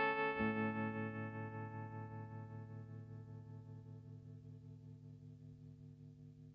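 Telecaster-style electric guitar: a last chord struck about half a second in, then left ringing with a slight wavering from an effect, slowly fading away.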